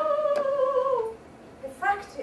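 A woman singing a long held note in an operatic style, which glides down and stops about a second in. A short burst of voice follows near the end.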